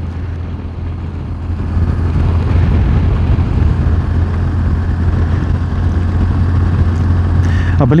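BMW R1200GS motorcycle cruising on a paved road: a steady low engine hum under a broad rush of wind and road noise on the camera, getting louder about a second and a half in and staying there.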